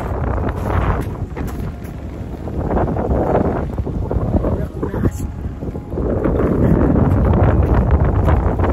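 Strong, gusty wind buffeting the phone's microphone: a loud low noise that swells and eases, strongest over the last couple of seconds.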